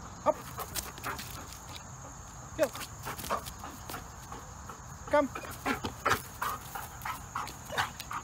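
A Belgian Malinois makes short vocal sounds several times while working for a ball toy, between spoken obedience commands.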